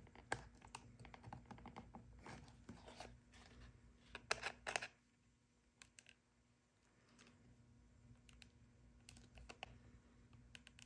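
Hand screwdriver driving screws into T-nuts through a leather knife sheath: faint small clicks and scrapes of metal on metal and leather, with a quick cluster of louder clicks about four seconds in.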